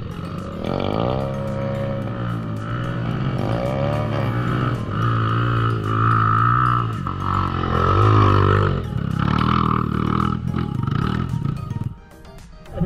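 Dirt-bike engine revving up and down again and again under load on a steep dirt climb, its pitch rising and falling about once a second.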